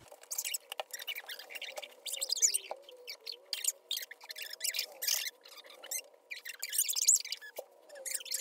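Soft, irregular rustles and crackles of a paper card being handled, with faint wavering squeaks underneath.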